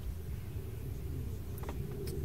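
Quiet steady low background hum with faint hiss, and one faint click about three quarters of the way through.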